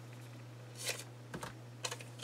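Faint handling sounds of scissors cutting a magazine page: one short papery snip just under a second in, then a few light clicks as the scissors are handled and set down, over a low steady hum.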